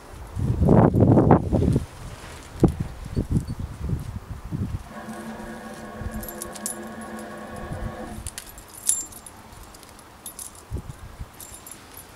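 Kitchen knife scraping and stripping the leafy edges and strings off a cardoon leaf rib, with small clicks, scrapes and leaf rustling. A loud low rumble lasts about a second and a half at the start. A steady pitched hum from an unseen source lasts about three seconds in the middle.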